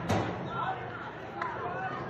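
A sharp thump right at the start and a lighter knock about a second and a half in, over shouting voices.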